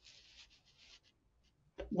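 Faint, scratchy rustling in short patches over the first second, then near silence; a woman's voice starts near the end.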